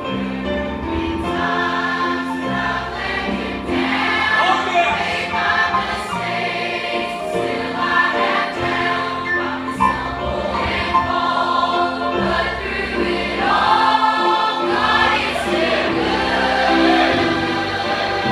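A large mixed teen choir singing a gospel hymn together, over an accompaniment of steady low bass notes that change every second or two.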